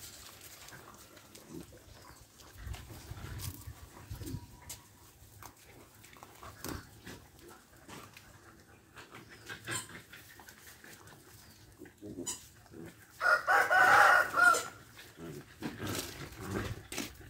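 A rooster crowing once, one long wavering call about thirteen seconds in, over an otherwise quiet yard with faint scattered clicks.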